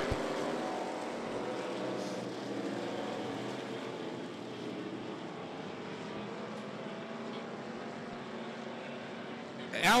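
Several dirt-track stock cars' engines running at speed, heard together as a steady drone that slowly fades.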